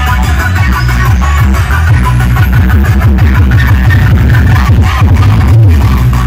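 Loud dance music for aerobics played through stage PA speakers, with a heavy bass beat and a rising sweep over the first few seconds.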